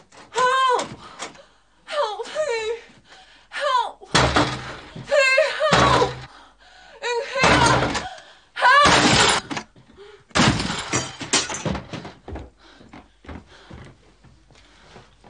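Heavy blows against a locked wooden plank door, four loud crashes as it is forced open, among high-pitched muffled cries from a gagged woman and a man shouting.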